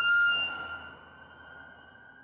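Ambulance siren holding one high steady tone just after sweeping up in pitch, growing fainter over the first second.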